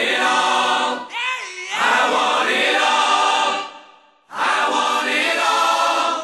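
Music with a choir of voices singing. The sound breaks off briefly just after four seconds in, then resumes.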